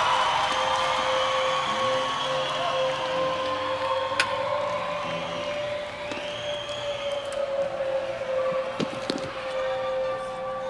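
Live rock concert between songs: a steady held drone note from the stage amplification, with higher tones that slide up and down above it, over the noise of a large outdoor crowd.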